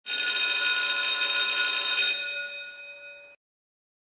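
Bell-like ringing sound effect with many tones sounding together, loud for about two seconds, then fading and cutting off abruptly.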